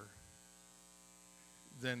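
Steady electrical mains hum, a low buzz with a faint steady high tone, during a pause in speech; a voice comes back in near the end.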